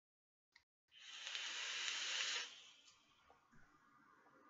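A long, hissing draw of about a second and a half on a Vandy Vape Bonza rebuildable dripping atomizer, built with 26-gauge wire and cotton, taken just after a faint click. It is followed by a quieter, breathy exhale of the vapour.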